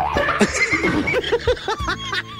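A horse whinny sound effect: a quick train of short rising-and-falling pulses that runs through the two seconds.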